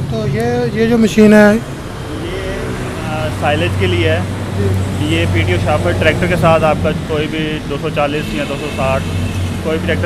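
Men talking in conversation over a steady low hum.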